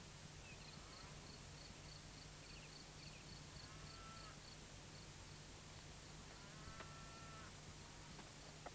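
Faint countryside ambience: a high chirp repeating about three to four times a second and a few short bird-like calls, over a steady low hum.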